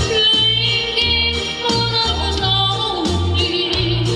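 Live pop music with a bass line pulsing in even, repeated notes and a wavering melody line above it.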